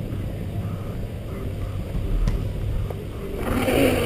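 Car driving slowly behind the riders, heard from a camera mounted outside on its body: a steady low rumble of engine, tyres and wind on the microphone, with a louder hiss swelling near the end.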